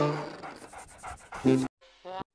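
A cartoon dog's vocal sounds, altered by a voice-changer app: one burst at the start that trails off, then a second short one about a second and a half in.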